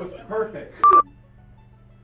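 A short electronic beep, one steady tone lasting about a fifth of a second, with a click where it starts and stops, about a second in.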